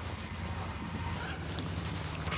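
A steady low engine hum, with a single short click about one and a half seconds in.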